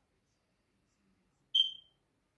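A single short, high-pitched electronic beep about one and a half seconds in, fading quickly.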